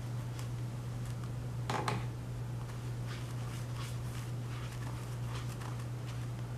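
Flat brush strokes across wet watercolour paper, a short stroke every half second or so, with one louder stroke about two seconds in, over a steady low hum.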